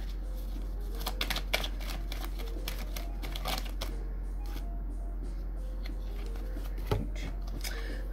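A tarot deck being shuffled overhand by hand: an irregular patter of soft card clicks and slaps, in several bunches, over a steady low hum.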